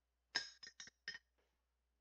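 Ceramic mug clinking against something hard: four quick, ringing clinks within about a second, the first the loudest.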